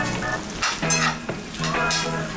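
Egg fried rice sizzling on a hot iron skillet as metal spoons stir it and scrape against the iron, in several quick strokes.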